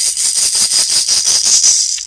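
Handheld rattle shaken rapidly and steadily, a loud, dense shaking made of many quick strokes.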